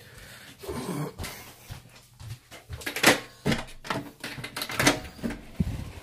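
A run of sharp clicks and knocks, the loudest about three seconds in, as a flat's front door lock is turned and the door opened.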